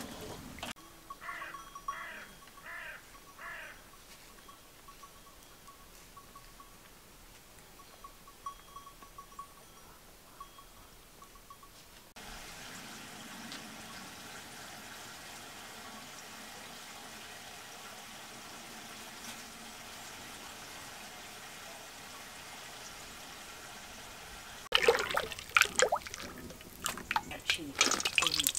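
Mostly quiet background. About a second in come four short calls half a second apart, and after about twelve seconds there is a faint steady hiss. Near the end, cooking oil is poured from a plastic jug into a cast-iron pan, splashing loudly.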